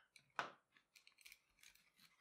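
Near silence, with one faint short scrape about half a second in and a few fainter ones after: hands handling a nylon paracord knot on a wooden mandrel.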